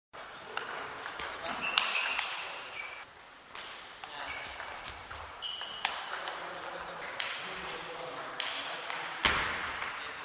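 Table tennis rally: the ball clicking sharply off bats and table in a back-and-forth exchange, roughly one hit every second or so, with the hits echoing in a large hall.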